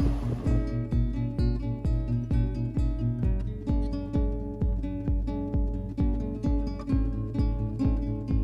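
Background music: a strummed acoustic guitar over a steady beat, starting about half a second in.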